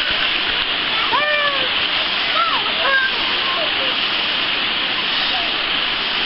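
Steady rush of a mountain stream running over rocks and a small waterfall. A few brief high children's calls come in over it in the first half.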